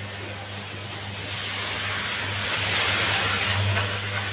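Electric hair clippers buzzing steadily while cutting a short buzzcut. From about a second in, the cutting grows louder as the blade is run up the side of the head, loudest near the end.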